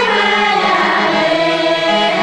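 Music: a song with several voices singing together over a steady low note, sounding without a break.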